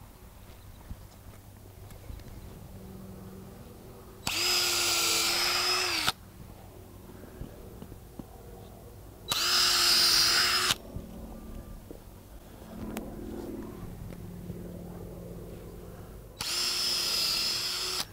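Cordless drill boring holes into an avocado tree's flare roots. It runs in three short bursts of about one and a half to two seconds each, several seconds apart, each at a steady pitch.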